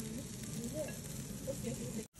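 Slices of beef cutlet sizzling steadily on a small tabletop hot stone grill heated by a burner flame.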